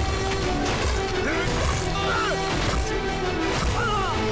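Battle-scene film soundtrack: background music over repeated crashing impacts of combat sound effects, with men's shouts rising and falling in pitch now and then.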